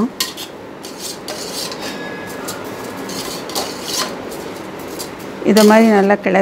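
Perforated metal ladle stirring rice and sweet corn in an aluminium pressure cooker, scraping and clinking against the pot at irregular moments. The rice is being turned in oil so the grains stay separate.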